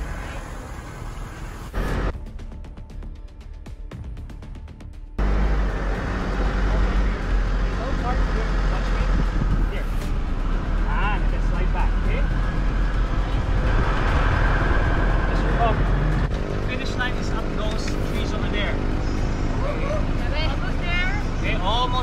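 Engine, road and wind noise from a car moving alongside the riders, a steady low rumble that comes in suddenly about five seconds in. Indistinct voices sound over it.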